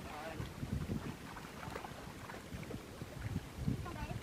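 Shallow stream water sloshing and splashing as people wade through it and grope in it with their hands, with wind buffeting the microphone.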